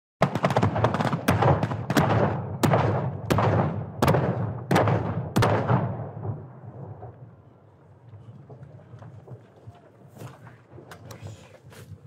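Staged battle effects: a run of sharp gunshot cracks, roughly one every half second to second, over the rumble of pyrotechnic explosions. After about six seconds the shots stop and the rumble dies away, with a few faint pops near the end.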